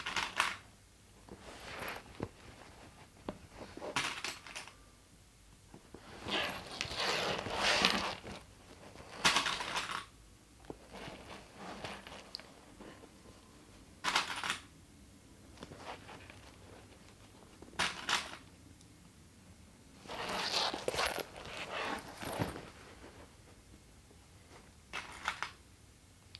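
Hands handling stiff canvas fabric and plastic sewing clips: intermittent rustling of the fabric, with short rattles and clicks as clips are picked from a plastic tub and pushed onto the edges.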